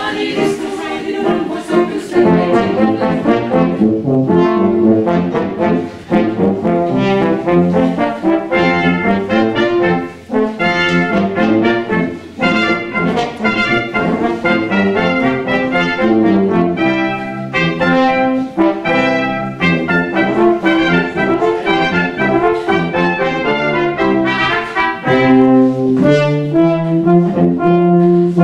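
Brass quintet of two trumpets, French horn, trombone and tuba playing an instrumental passage, the notes moving quickly over a low tuba line that grows fuller near the end.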